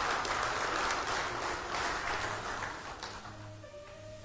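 Audience applauding, dying away over the first three seconds, with soft background music coming through as held notes near the end.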